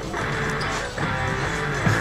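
Background music, led by guitar.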